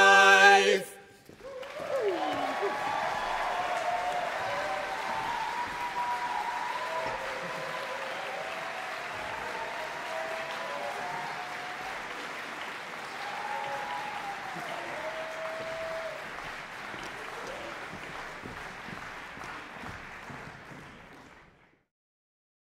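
A four-part a cappella barbershop quartet's final chord, held and cut off about a second in, then audience applause with cheers and whoops. The applause is loudest at first and slowly fades before it cuts off near the end.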